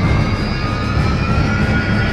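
Loud dubbed soundtrack: a heavy, steady low rumble under thin high tones that slowly rise in pitch, like a jet or aircraft effect.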